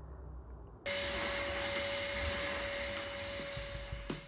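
A cylinder vacuum cleaner being run over carpet comes in abruptly about a second in: a loud, steady hiss with a constant motor whine beneath it.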